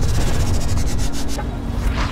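Logo-intro sound effect: a loud, rumbling whoosh over a low held tone, building to a peak near the end, part of an intro music sting.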